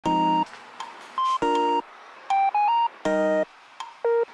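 Background music: a light keyboard-synth tune of short staccato chords about every one and a half seconds, with single notes and a short three-note rising phrase between them.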